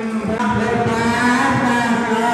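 Buddhist chanting: a voice holding long, low droning notes that bend slightly in pitch.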